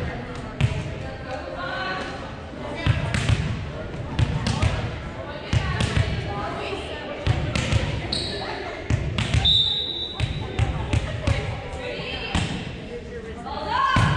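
Volleyballs being hit and bouncing on a hardwood gym floor during warm-up: repeated irregular slaps and thuds that echo in the large hall, with two brief high squeaks in the middle.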